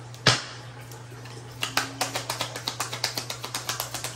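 A deck of tarot cards being shuffled by hand. A single sharp snap comes just after the start, then from about a second and a half in, a quick run of light card clicks.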